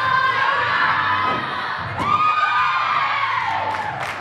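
Several young women shouting and cheering from the side of the balance beam in long, drawn-out calls that overlap. A fresh loud shout starts about halfway through and slowly falls in pitch.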